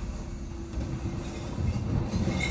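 Bin lorry's engine and hydraulic bin-lift running, a low steady rumble, as a wheelie bin is loaded onto the rear Terberg lifter.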